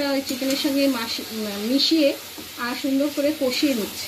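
Chicken in poppy-seed and green-chilli paste frying in a kadai as it is stirred, with a steady sizzle while the masala is sautéed down. A voice talks over it and is the loudest sound.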